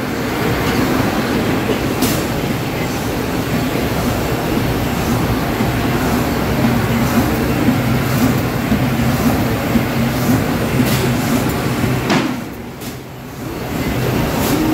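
Automatic lead-edge-feeder die-cutting machine running a 5-ply corrugated board job at production speed (about 3900 sheets an hour): a steady mechanical rumble and clatter with a low hum and occasional sharp clicks. It is briefly quieter about twelve seconds in.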